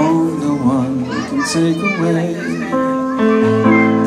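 Live piano song with a man singing into a microphone. Other voices talk over the music in the first couple of seconds, then steady piano chords and a held sung note follow.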